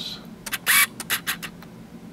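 Handling noise: a quick run of about eight short clicks with one brief rustle among them, from about half a second in to about a second and a half in.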